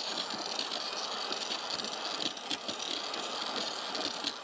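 Corded electric drill with a paddle mixer running steadily, stirring two-component water-based epoxy primer in a bucket: an even whirr of the motor with the liquid churning.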